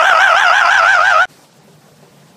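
A high-pitched voice holding a drawn-out, warbling laugh whose pitch wavers up and down, cut off abruptly about a second in; faint hiss follows.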